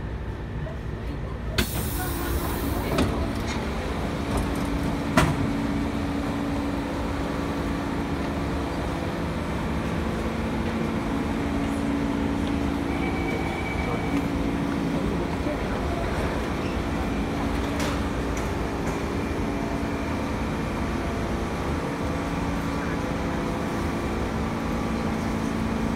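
Train doors opening with a brief hiss about two seconds in, letting in station noise. Then busy underground platform ambience: background chatter, a few clicks and a steady low hum.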